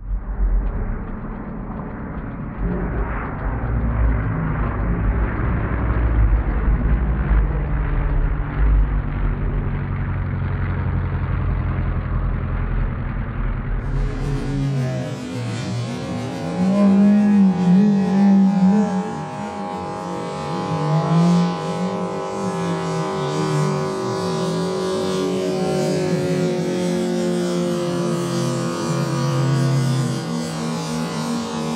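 Moki radial engines of giant-scale RC warbirds flying past, the engine note slowly falling in pitch as an aircraft goes by. The first half is duller, with a strong low rumble.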